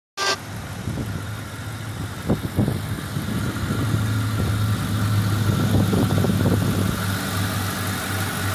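2002 Ford Mustang's V6 engine idling steadily, heard with the hood open. A sharp click right at the start and a couple of brief knocks about two and a half seconds in.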